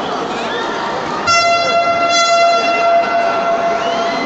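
A horn blown in the crowd: one steady, sharp blast of about two seconds, starting abruptly a little after a second in, over the noise and chatter of an arena crowd.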